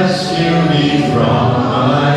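Congregational worship song: a man sings the lead into a microphone with other voices and musical backing.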